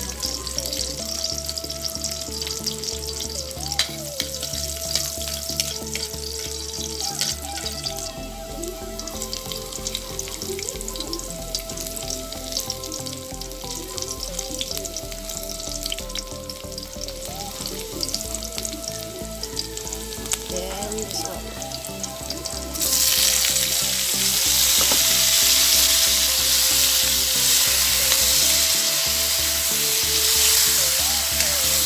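Chopped garlic and onion frying in oil in an aluminium wok with a light crackle. About 23 seconds in, it jumps to a much louder, steady sizzle as sliced sponge gourd (sikwa) goes into the hot oil.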